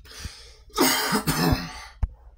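A man coughing and clearing his throat: a harsh burst of about a second, starting a little before the middle and following a softer breathy sound.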